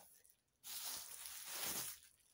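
Packaging rustling as a parcel is unpacked by hand: one continuous rustle lasting just over a second, starting about half a second in.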